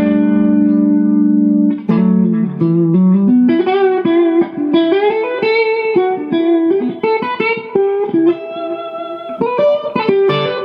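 Suhr Classic Pro electric guitar on its middle pickup through a clean Mesa Boogie Fillmore amp, with an Analog Man Bi-Chorus switched on and a little delay. A held note with a slight warble gives way, about two seconds in, to a single-note melodic line; the chorus is subtle.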